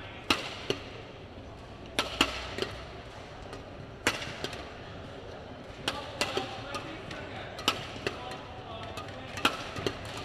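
Badminton rackets striking a feathered shuttlecock in a doubles rally: sharp hits at irregular intervals, some in quick pairs, over the steady hum of an arena hall.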